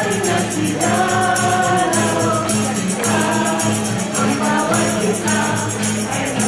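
A small group of voices singing a song together, accompanied by an acoustic guitar.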